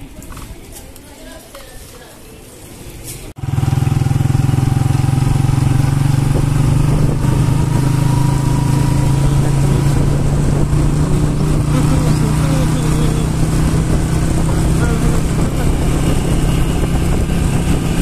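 Motorcycle engine running steadily while riding along a road. It starts suddenly about three seconds in, after a quieter stretch.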